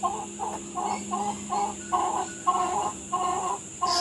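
A hen clucking in a steady run of short clucks, about two a second.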